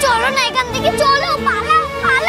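A high-pitched voice, like a child's, talking over background music with long held notes.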